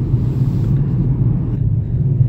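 Steady low rumble of a car on the move, engine and road noise heard from inside the cabin.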